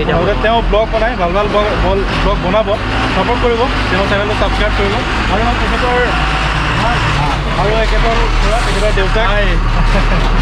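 People talking over the steady low rumble of a Tata dump truck's engine, which grows louder in the last few seconds as the truck drives up close.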